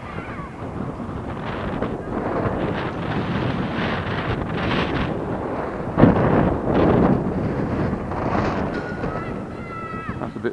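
Gusty wind buffeting the camera microphone, building over the first couple of seconds, with a sharp, loud gust about six seconds in.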